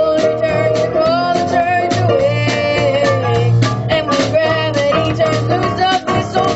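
Live band playing a gospel song on keyboard and guitar, with a wavering melody line held over steady chords and a regular beat.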